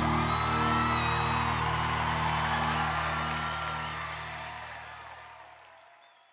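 A band's final chord held and ringing out under an audience cheering and whooping, everything fading away through the second half.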